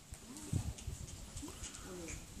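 A horse's hooves thudding on the soft sand of an arena as it moves, the loudest thud about half a second in.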